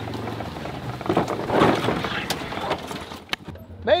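Side-by-side utility vehicle driving over rough, brushy ground: a steady low engine hum, then a rush of rattling and brush scraping with a few sharp knocks through the middle.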